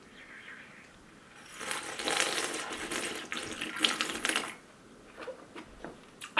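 A person slurping melted blue sports-drink slush straight from the rim of a plate: a wet, crackly slurp lasting about three seconds, starting a second and a half in.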